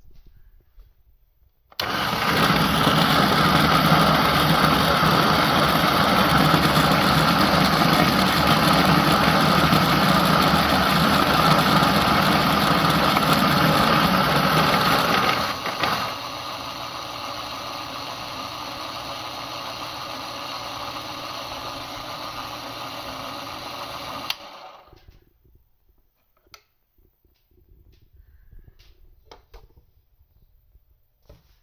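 Niche Zero coffee grinder running, its motor and conical burrs grinding espresso beans. It starts about two seconds in, drops to a quieter, steadier level about halfway, then stops, followed by a few faint small clicks.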